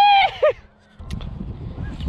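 A man's loud, high-pitched vocal cry that rises and then falls in pitch, followed by a short second note. From about a second in there is a low rumbling noise.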